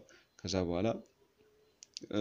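A man's voice saying one short word, then a pause and two short clicks near the end.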